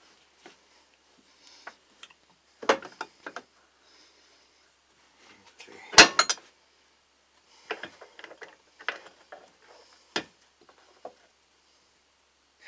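Scattered metal clinks and knocks from a universal joint and its bearing cap being worked loose in a bench vise, the loudest a sharp metallic knock about six seconds in.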